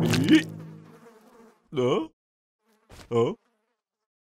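A drum roll ends in a crash right at the start, ringing off over about a second, then two short hummed vocal grunts follow, about a second apart.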